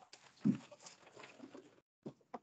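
Faint rustling and bumping, with one dull thump about half a second in.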